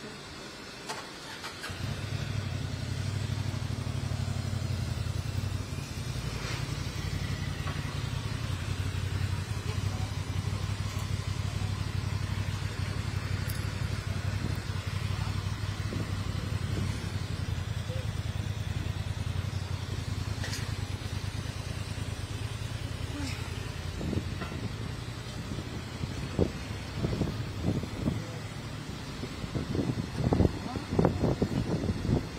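A motor vehicle engine running close by, a steady low rumble that starts about two seconds in. In the last few seconds, irregular louder bursts join it.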